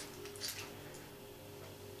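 Faint handling noise, a brief soft rustle about half a second in, as the lid of a small Zippo fuel canister is unscrewed, over a low steady hum of room tone.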